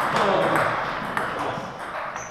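Table tennis ball clicking against table and bats, a few sharp knocks, with voices in the hall.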